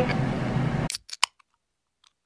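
Quiet room tone that cuts off abruptly about a second in, followed by silence broken by three brief clicks in quick succession.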